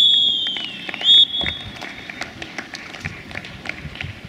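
Referee's whistle on a football pitch: a long, high blast that dips in pitch as it ends, then a short blast about a second in, matching the final-whistle signal. Scattered sharp clicks follow.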